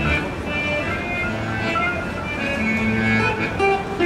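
A live band playing, with acoustic guitar and accordion.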